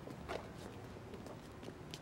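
Faint footsteps of two people walking on pavement, over a quiet, steady background hiss.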